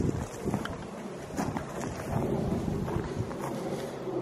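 Wind rumbling unevenly on the camera microphone, with a few faint clicks.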